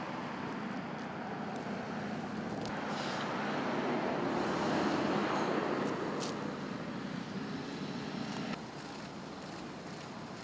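Outdoor roadside ambience: a steady noise of traffic that swells as a vehicle passes in the middle, then drops abruptly to a quieter background near the end.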